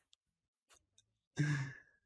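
A man's short, breathy laugh near the end, after a stretch of quiet.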